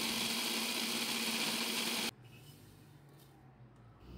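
Electric blender motor running steadily, grinding dried melon seeds and sugar into a fine powder. It cuts off abruptly about two seconds in, leaving only faint background.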